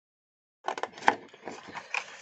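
Small scissors snipping into white cardstock along a scored line, with the sheet rustling as it is handled: a run of short crisp rasps starting about half a second in, the sharpest about a second in.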